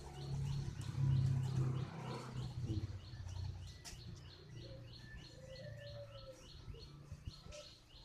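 A small bird chirping over and over in the background, about three or four short falling chirps a second. Loud low rumbling in the first couple of seconds, and a soft dove coo a little past the middle.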